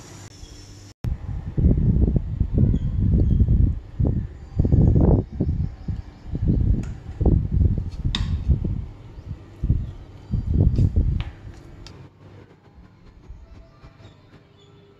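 Spoon mixing rice and sambar on a plastic plate: a run of irregular dull scrapes and knocks, with a sharp click about eight seconds in, dying down near the end.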